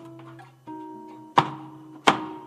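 Malambo accompaniment music: guitar chords struck sharply, with held notes ringing between the strikes and a loud accented strike about one and a half seconds in.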